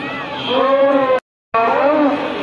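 A voice chanting in long, wavering held notes, in the manner of devotional recitation. The sound cuts out completely for a moment just past a second in, then the chant resumes.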